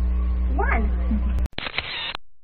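A person's voice making a short, high, sliding cry, like a meow, over a steady low electrical hum. About one and a half seconds in, the sound cuts off abruptly and gives way to a brief rush of noise that fades out.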